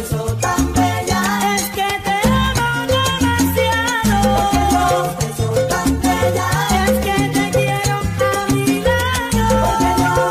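Salsa romántica music in an instrumental passage without singing: a repeating syncopated bass line under melodic lines, with steady percussion.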